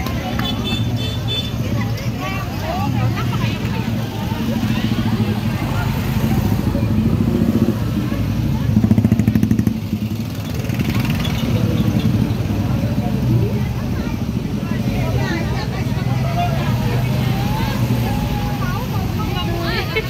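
Small pickup truck engine running at low speed, heard from its open cargo bed, with motorcycles close by and people talking.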